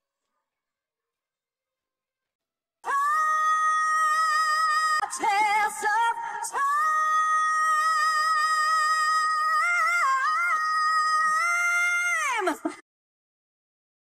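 Isolated female lead vocal, stripped from the band, coming in about three seconds in. She holds long high notes around D#5 with a quick run in the middle and a small turn later, and the pitch slides down as the phrase ends. The held notes sit so flat and steady that they are taken for pitch correction.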